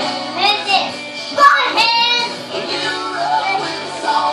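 A young child singing along over a recorded rock-style song with a band playing, his high voice loudest about one and a half to two seconds in.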